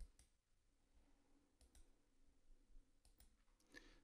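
Near silence, broken right at the start by a single short mouse click, with a few much fainter ticks later on.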